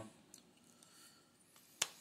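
Near silence broken by one short, sharp click near the end, from handling a Coast A9R rechargeable pen light and its push-on USB charging cap.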